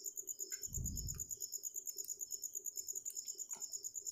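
Faint insect chirping, an even fast pulse of about nine beats a second, with a soft low thump about a second in.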